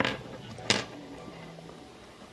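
Two short sharp clicks, one right at the start and a louder one about 0.7 s in, from hands working nylon monofilament fishing line while a figure-of-eight knot on a swivel is tightened.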